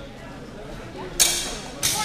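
Two sharp clashes of steel practice swords about half a second apart, each leaving a short metallic ring.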